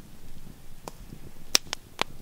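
A few short, sharp clicks at uneven intervals, the loudest about one and a half seconds in, over a low background rumble.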